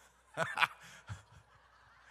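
A man's voice giving a short, loud whoop about half a second in, with a few faint sounds after it.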